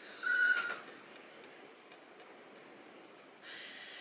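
A woman's short, high-pitched vocal sound about a quarter second in, then quiet room tone; a soft rustle of noise rises near the end.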